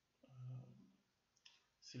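A man's brief wordless vocal sound, then a faint click about a second and a half in, and the start of speech at the very end.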